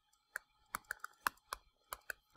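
Stylus pen tapping on a touchscreen while numbers are handwritten: about ten short, sharp, irregular ticks.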